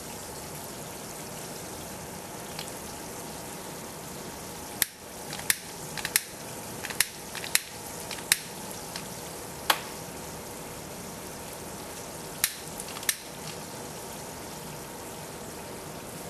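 Steady fizzing of a hot aluminium, water and catalytic carbon mixture giving off hydrogen bubbles, with a scattering of a dozen or so sharp clicks from about five to thirteen seconds in.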